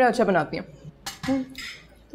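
Cutlery clinking against dinner plates during a meal, a couple of short clinks about a second in.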